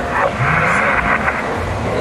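Two-way radio audio from a handheld amateur transceiver's speaker: a narrow-band, hissy transmission with a faint, garbled voice in it.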